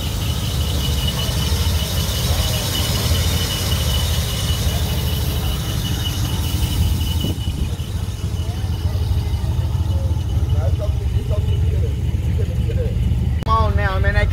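A car engine idling with a steady low rumble, a thin high-pitched whine running over it for the first half and stopping about seven seconds in.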